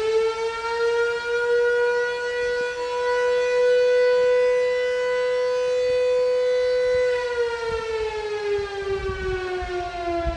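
Electromechanical fire siren at full pitch, holding a steady wail, then winding down from about seven seconds in.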